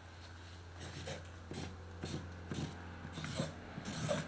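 Marker pen writing on paper pinned to a wall: a series of short, quiet scratching strokes, over a steady low hum.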